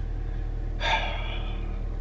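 A man takes one heavy, audible breath about a second in. Under it runs the steady low hum of the car's idling engine, heard from inside the cabin.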